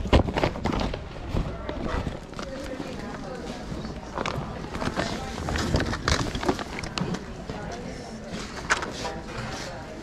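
Plastic toys clattering and knocking together as a hand rummages through a cardboard box of toys, over a murmur of other people's voices.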